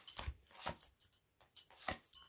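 Tarot cards being handled and dealt onto a cloth-covered table: a string of short card flicks and slaps, about five in two seconds.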